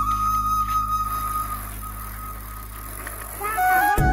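Background music on a bansuri flute: one long held note over a low steady drone fades about halfway through, and a new flute phrase begins near the end.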